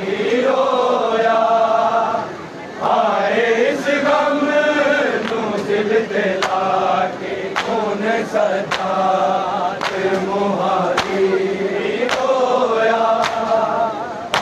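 A group of men's voices chanting a noha, a Shia mourning lament, in unison. Sharp hand slaps of matam (chest-beating) land on the beat about once a second, most evenly in the second half.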